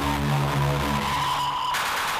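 Electronic dance music from a DJ mix in a breakdown: the bass line drops out about a second in, leaving a high, held tone and a rushing noise sweep that swells toward the end.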